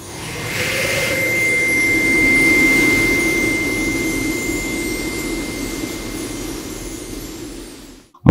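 Title-card sound effect: a swelling wash of noise with a steady high tone held through it, building for the first two to three seconds and then slowly fading out.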